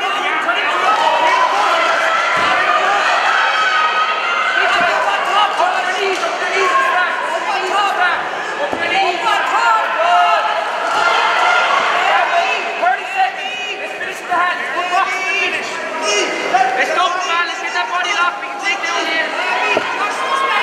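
Many voices from the crowd and the fighters' corners calling out at once in a large hall, no one voice clear, with a few thuds of the grappling fighters hitting the mat.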